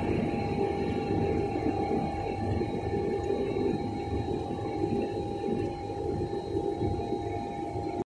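Hydrocyclone battery running: a steady machine hum with a constant tone, over the sound of slurry flowing from the underflow spigots into plastic tubs.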